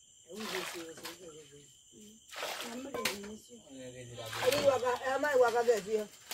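Women talking, with a few splashes of water as the liquid pressed out of grated cassava is scooped from a metal pan into a bowl.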